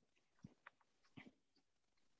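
Near silence, broken by a few faint, very short clicks in the middle.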